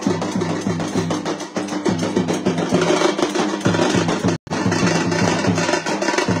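Dhol and nagara drums beaten in a fast, steady rhythm. The sound cuts out for a moment about four and a half seconds in.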